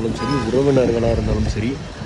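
A man talking in Tamil.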